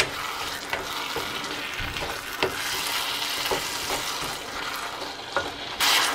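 Onion, tomato and spice masala frying in oil in a pan, sizzling steadily while a wooden spatula stirs it, with scattered taps and scrapes of the spatula against the pan. It is being fried until the oil separates from the masala. The sizzle turns suddenly louder just before the end.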